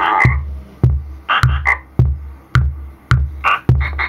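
Roland DR-55 drum machine beating out a steady kick-and-click pattern about twice a second, synced to a circuit-bent Lego sound toy whose stored sound samples play in short bursts between the beats.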